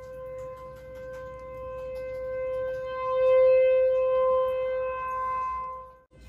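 A horn blown in one long, steady note with no wavering in pitch. It swells about halfway through and cuts off just before the end.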